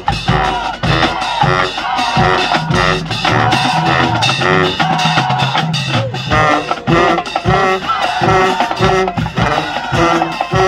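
Marching band playing: brass and saxophones over a drumline of snare drums, bass drums and cymbals, with a steady beat and a stepping bass line from the sousaphones.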